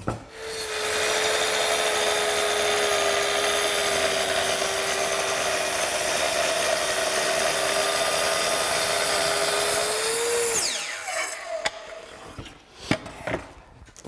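Kreg Adaptive Cutting System plunge track saw ripping a 2x6 along its guide track to take off the rounded edge. It spins up and runs steadily under load through the wood for about ten seconds. Then the pitch lifts briefly as it leaves the cut and winds down with a falling whine, and a couple of knocks follow near the end.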